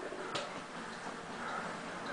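Upright stationary exercise bike being pedalled: a faint steady whir with light ticking from the mechanism, and one sharper click about a third of a second in.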